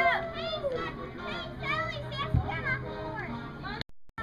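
Children's voices shouting and chattering in high, rising and falling calls, with one short thump about two and a half seconds in. The sound cuts out briefly near the end.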